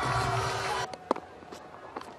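Cricket ground crowd noise after a six is hit, cut off abruptly about a second in, followed by quieter ground ambience with a single sharp click.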